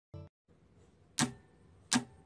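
A brief pitched blip, then sharp percussive clicks evenly spaced about three-quarters of a second apart, starting just over a second in: the count-in at the start of a song.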